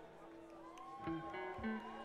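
Guitar picked a note at a time: a ringing note fades, then three short notes follow quickly one after another about a second in.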